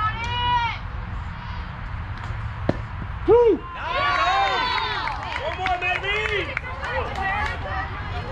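Several high-pitched voices of softball players and spectators shouting and cheering during play, overlapping loudly from about three seconds in. Just before the shouting there is a single sharp knock.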